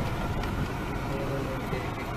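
Vehicle cabin noise while driving over a rough gravel track: a steady engine and tyre rumble with a few light knocks and rattles.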